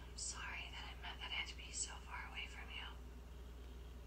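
A faint voice speaking in a whisper-like hush for about three seconds, over a steady low hum.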